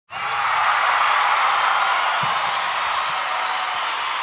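Crowd applause and cheering: a dense, steady noise that starts abruptly.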